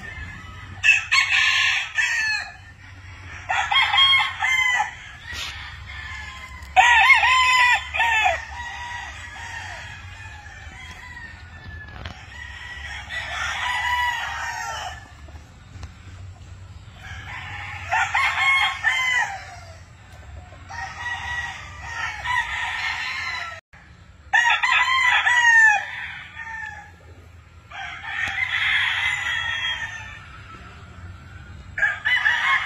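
Several gamefowl roosters crowing in turn, a crow every few seconds, each lasting one to two seconds, some overlapping.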